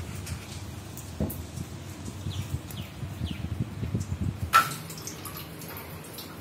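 Water dripping from a wall tap, with one sharp clink about four and a half seconds in.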